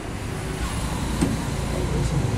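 Low, steady rumble of motor vehicles passing on a nearby road.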